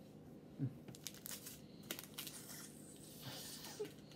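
Faint crinkling and clicking of a small plastic packet of power-ball crystals being handled, followed by a short sniff at the packet near the end.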